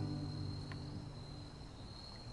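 Steel-string acoustic guitar chord left ringing and slowly fading while the strumming pauses, with an insect's steady high chirring underneath.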